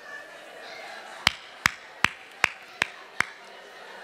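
Six sharp, evenly spaced taps, about two and a half a second, over a low murmur of room noise.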